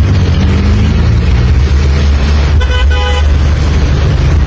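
A vehicle horn honks for about half a second, a little over two and a half seconds in, over a steady low rumble of street traffic.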